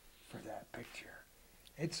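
Soft, quiet speech: a man's few murmured or half-whispered words, with full-voiced speech starting again near the end.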